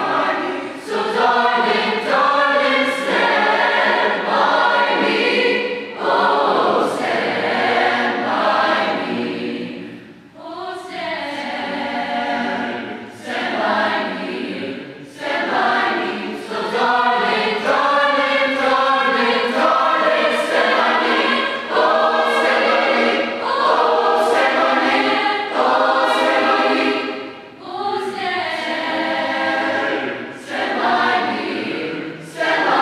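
Mixed choir of female and male voices singing in harmony, with brief breaks between phrases about ten seconds in and again near the end.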